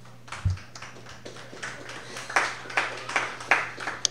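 Sparse applause from a small audience, its claps coming more evenly, about two a second, in the second half, with a low thump about half a second in.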